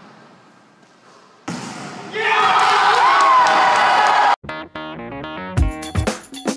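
A group of teenage boys cheering and yelling loudly in a gym, starting about a second and a half in and cutting off suddenly. Music with plucked-string notes then takes over, with a beat coming in near the end.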